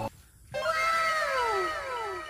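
The background music cuts off. After a brief silence comes a pitched, meow-like cry that slides slowly downward, repeated in overlapping, staggered echoes, as from an added sound effect.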